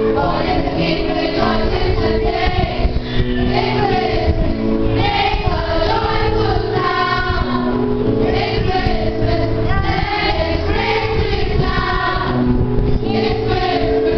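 Children's choir singing a Christmas carol together, with steady held accompaniment chords underneath.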